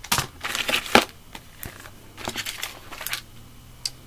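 Plastic packaging of craft embellishment packs crinkling and rustling in irregular bursts as they are handled, with a few sharp clicks.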